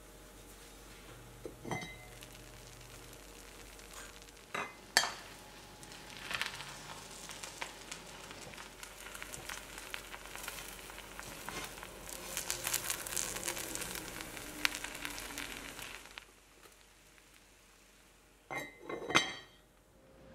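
Rice sizzling faintly in a hot cast iron pot. The heavy cast iron lid knocks as it is lifted about five seconds in, and then a spatula stirs and scrapes through the cooked rice for about ten seconds, with a crackle of many small ticks. Two short sounds come near the end.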